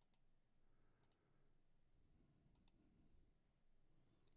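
Near silence with a few faint computer-mouse clicks, two pairs of them close together, as a dropdown option is chosen and a button is pressed.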